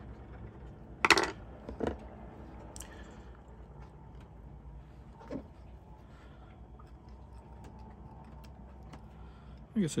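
Small metal hand tools, a screwdriver and needle-nose pliers, being handled on a work table: a sharp metallic clatter about a second in, a smaller knock just before two seconds, then a few faint taps.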